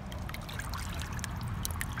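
Light water sloshing and splashing as hands push small plastic dolls through the water, with scattered droplet plinks throughout.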